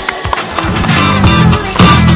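Skateboard rolling on asphalt, with a few sharp clacks of the board near the start, under music with a steady beat.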